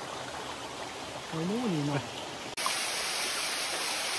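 Steady rush of a shallow rocky stream. A little over halfway through it gives way abruptly to the louder, brighter splash of a small waterfall pouring over rock.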